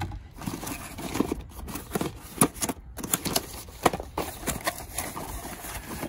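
A small cardboard box being opened by hand: irregular clicks, scrapes and paper rustling as the lid comes up and the packing sheet is handled.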